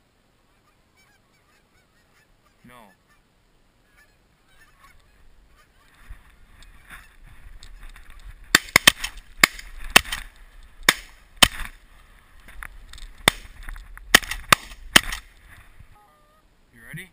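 Canada geese honking as a flock comes over, building from a lone call into many, then a rapid volley of about a dozen shotgun shots from several guns firing at the flock over the last seven seconds.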